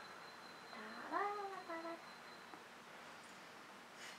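A short meow-like call about a second in, rising then falling in pitch, followed at once by a briefer, lower note.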